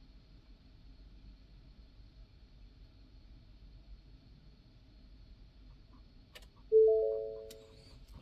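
Quiet background with a faint high steady whine, then near the end a few faint clicks and a short electronic chime of two or three tones that fades away over about a second.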